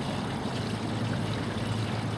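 Waste oil blend diesel fuel pouring slowly from a container through a funnel with stacked mesh screens into a five-gallon fuel can, a steady trickle, over a steady low hum. The pour is kept gentle so as not to stir up the contaminants settled at the bottom of the container.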